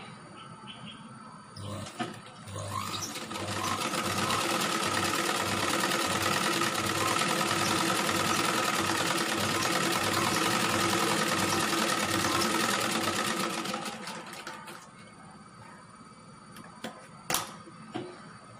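Black household sewing machine stitching a seam, running up to speed over the first few seconds, sewing steadily with a fast even rhythm, then slowing to a stop about three-quarters of the way through. A sharp click comes near the end.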